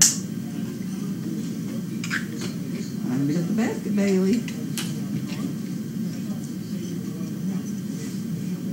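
Brief, indistinct voice sounds, about three to four and a half seconds in, over a steady low room hum. There is a single sharp click at the very start.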